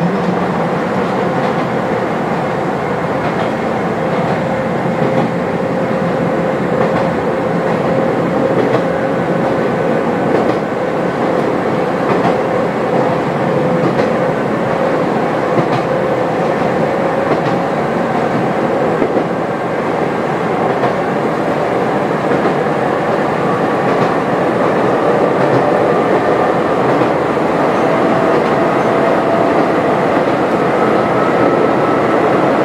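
Kobe Electric Railway 1100-series electric train heard from inside the cab while running: a steady rumble of wheels on rail with faint rail-joint clicks. A traction-motor and gear whine holds one pitch, then rises slowly in the second half as the train picks up speed.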